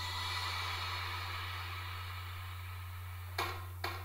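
Faint room noise over a steady low hum as the sung note dies away, then near the end two sharp hand claps about half a second apart, the start of a steady clapped beat.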